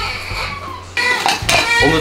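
Plates and dishes clinking and clattering, with a few sharp knocks about a second in.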